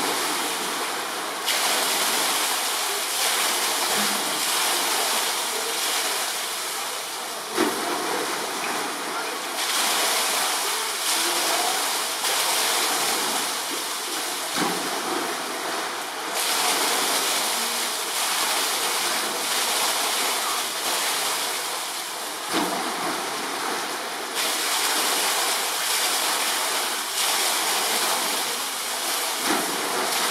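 Steady rush of running water from the polar bear enclosure's pool, with a short knock standing out about every seven to eight seconds.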